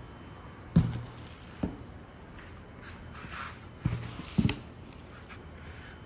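A cardboard box and its plastic air-cushion packing being handled: four dull knocks spread over several seconds, with a brief plastic rustle in the middle.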